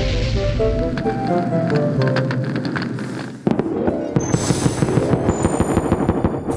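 Cartoon fireworks sound effects over background music: a rushing whoosh at the start, then, about three and a half seconds in, a sudden run of rapid crackling pops with thin high sparkling tones above.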